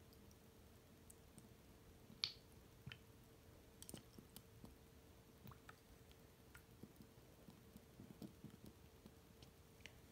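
Near silence with faint scattered clicks and squishes from a plastic pipette stirring and bubbling air into the water of a small plastic aquarium tank, the sharpest click about two seconds in, over a faint steady hum.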